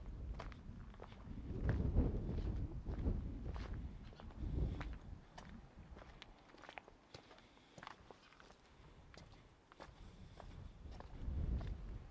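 Footsteps walking along a stone and gravel path, an uneven series of short scuffing steps. Low rumbling swells about a second and a half in and again near the end.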